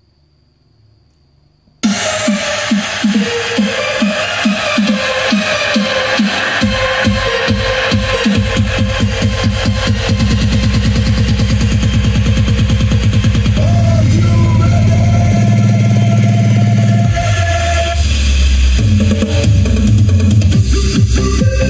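Electronic dance remix played quite loud through a Lo-D AX-M7 mini hi-fi and Panasonic bookshelf speakers. The music starts suddenly about two seconds in, after near silence. A fast repeating pattern comes first, and heavy bass joins about eight seconds in.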